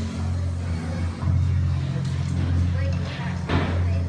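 Low amplified guitar and bass notes from a live metal band ringing steadily in a club, under crowd voices; a single sharp hit cuts through about three and a half seconds in.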